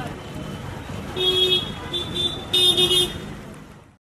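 Car horn honking on the street: a half-second toot, two short toots, then a longer stuttering blast, over background street noise and chatter.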